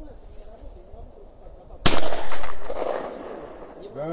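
A single shotgun shot at a clay target about two seconds in, its report echoing and dying away over about a second and a half.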